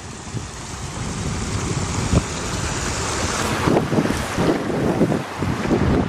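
Muddy floodwater rushing over rocky ledges in a swollen wadi, a steady wash of water noise, with wind buffeting the microphone. It grows gradually louder through the second half.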